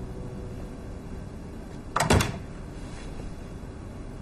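An apartment front door being shut about halfway through: a quick clatter of the latch and handle, then one thud as the door meets its frame.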